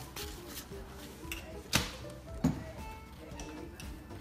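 Faint background music, with two sharp knocks of kitchen containers being handled on a countertop, about one and three-quarter seconds and two and a half seconds in.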